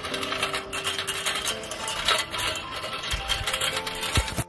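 Background music over a steady, rapid clattering: the rattle of a child's small metal tricycle rolling along an asphalt road.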